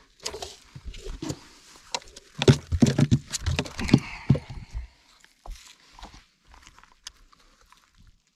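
Redfish flopping on a boat's carpeted deck: a quick run of thumps and slaps, heaviest about two to four seconds in, then thinning to a few scattered knocks.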